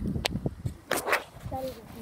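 Brief, indistinct voices over rustling handling noise from a phone being swung about, with a short pitched vocal sound near the end.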